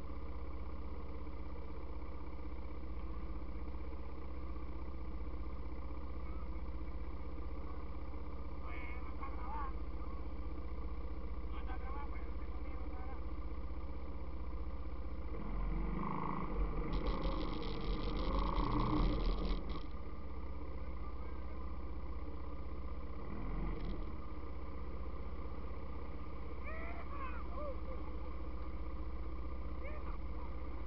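ATV engine idling steadily, with faint voices in the distance; for about four seconds past the middle the engine noise grows louder and rougher.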